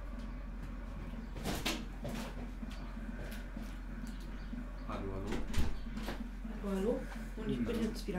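A voice speaks indistinctly in the second half over a steady low hum, with a few sharp knocks, the loudest just past the middle.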